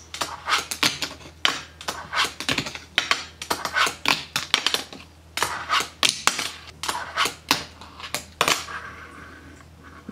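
A fingerboard being popped, flipped and landed on a tabletop: a fast, irregular run of sharp clicks and clacks as the small deck and its trucks strike the surface, growing fainter near the end.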